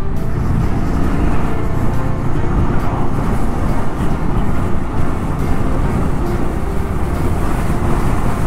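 Honda Rebel 250's single-cylinder engine running at steady road speed, mixed with wind rushing over the rider's microphone.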